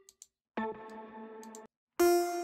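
SynthMaster One software synthesizer sounding a preset from its plucked-strings category while presets are being auditioned: a single steady note with several overtones, starting about half a second in and cut off suddenly about a second later. A couple of faint clicks come before it.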